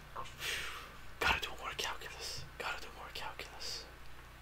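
A man laughing softly under his breath in breathy, whispered puffs, with a sharp click about a second in.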